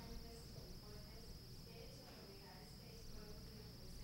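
Near silence: courtroom room tone under a steady, faint high-pitched hiss, with faint murmuring in the background.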